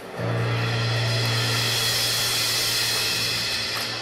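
A live band's held final chord: a low bass note struck just after the start and sustained, under a swelling cymbal wash, easing off near the end.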